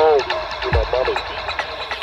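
Electronic music: deep kick drums that drop quickly in pitch, short arching synth chirps that bend up and down, and light ticking hi-hats.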